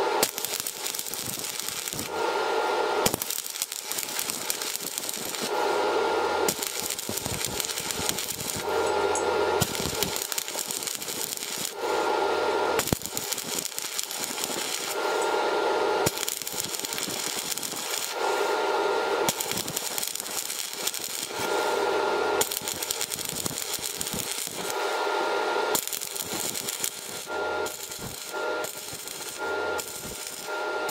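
Stick-welding (MMA) arc crackling and sizzling steadily as the electrode burns, with a lower buzzing swell that comes and goes about every three seconds.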